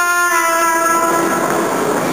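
Subway train running past, a loud rush of noise that swells about half a second in and drowns out a trumpet playing a melody.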